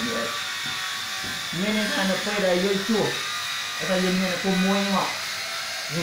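A man speaking in two short phrases, with a steady faint high-pitched whine underneath.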